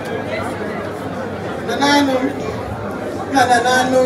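Chatter of a crowd in a large hall, with a louder voice breaking through about two seconds in and again near the end.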